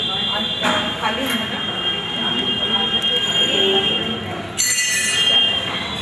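Metal bells ringing with sustained high tones, and a fresh strike about four and a half seconds in that rings on. Voices murmur underneath.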